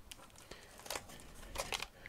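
Faint rustling and a few light clicks of hands handling a taped cardboard shipping box.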